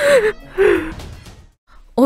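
A woman sobbing: two loud, breathy cries, each falling in pitch, about half a second apart, then dying away.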